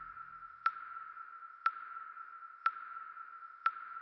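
A steady high electronic tone with a sharp tick once a second, like a slow clock; a low music bed fades out in the first half second.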